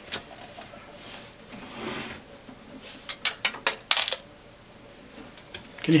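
A loose screw sliding and rattling inside the case of a Keithley 228A voltage and current source as the unit is tilted: a soft scrape, then a quick run of small metallic clicks about three to four seconds in. Something loose inside the instrument is a possible sign of a big problem.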